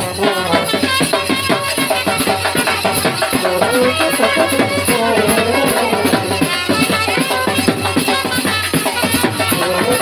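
Indian band baja brass band playing a tune: trumpets and baritone horns over drums, with shaken metal hand percussion keeping a steady beat.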